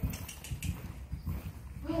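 A horse trotting on soft sand arena footing: dull, muffled hoofbeats at an uneven pace.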